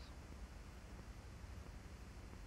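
Near silence: a faint steady hiss with a low hum underneath, the background noise of an old film soundtrack.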